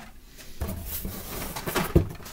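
Handling noises as a carded toy car is put away into a storage box: faint scattered rustles and taps, then one sharp knock near the end.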